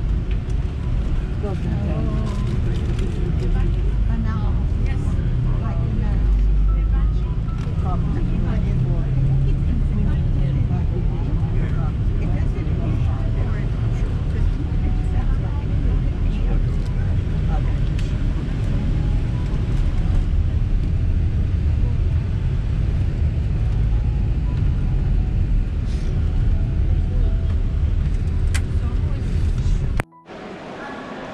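Steady low rumble of a tour bus's engine and tyres on the road, heard from inside the cabin, with passengers talking quietly underneath.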